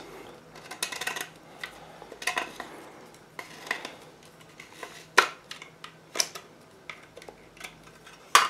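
Scattered light scrapes and sharp clicks of PVC pipe parts and a hand saw being handled. The saw blade scrapes burrs off the freshly cut edge of a 3/4-inch PVC pipe. The sharpest click comes about five seconds in.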